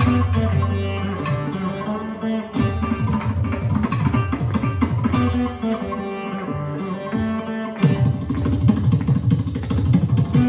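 Carnatic veena instrumental: plucked melodic runs on the veena over a fast, steady rhythm of hand-drum strokes.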